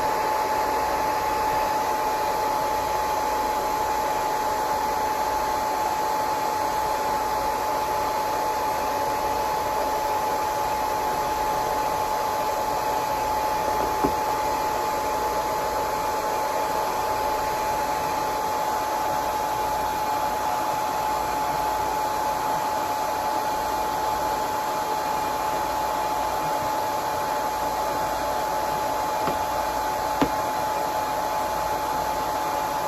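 Hair dryer running steadily: a constant rush of blown air with a steady whine from its motor. There is a single faint click about fourteen seconds in.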